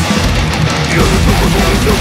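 Heavy metal band playing, with guitars, bass and drums. The lowest bass thins out for the first second, then the full band comes back in about a second in.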